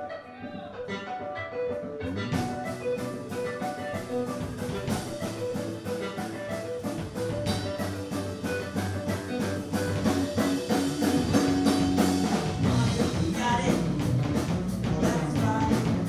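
Live rock band: an electric guitar picks a melodic line almost alone, then bass guitar and drum kit come in about two seconds in and the band plays on, getting louder around ten seconds in.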